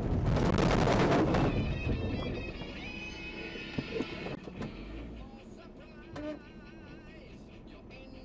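A loud rumble of car noise in the cabin for about the first second and a half, fading as the car slows to a crawl. Then quieter music with a singing voice, with a couple of small clicks.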